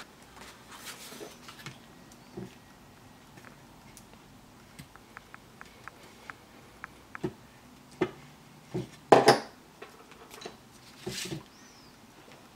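Card stock being handled on a cutting mat: soft paper rustles and light taps, with a quick run of small ticks in the middle and the loudest rustles towards the end as the pieces are laid down.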